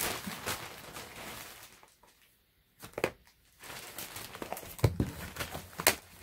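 A bag rustling as it is rummaged through, with books being shifted and set down, giving a few sharp knocks. There is a short lull about two seconds in, and the loudest knock comes near the end.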